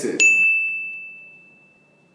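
A single bell-like ding: one high, clear tone struck once, ringing out and fading away over about two seconds.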